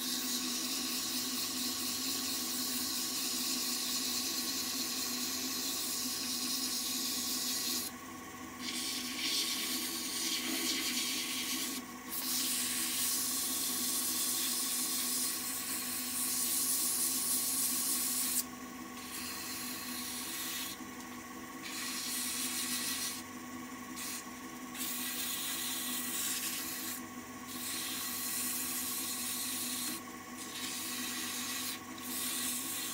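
Wood lathe running with a hand-held pad rubbing against the spinning maple workpiece: a steady hissing rub over the lathe motor's steady hum, broken by short gaps several times as the pad is lifted off.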